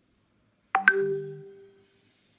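A two-note chime: two quick bright tones struck about a tenth of a second apart, ringing and fading out within about a second.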